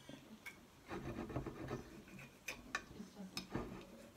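Table knife sawing through a tender steak on a plate, a soft scraping rasp with a few light clicks of the knife and fork against the plate.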